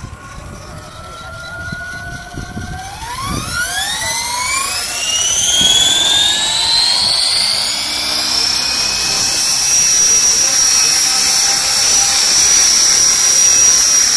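Radio-controlled model helicopter spooling up on the ground: a high whine from the motor and rotor rises steeply in pitch and grows louder over several seconds, then holds steady at flying speed from about nine seconds in.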